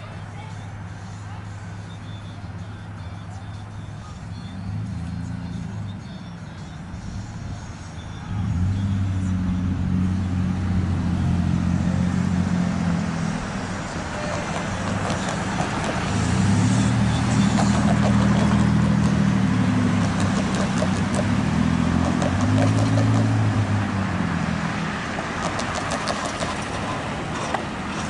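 Diesel locomotive engines running during yard switching: a low steady engine drone that rises in level about eight seconds in, swells again about halfway through, then eases off toward the end, as the engines are throttled up and back.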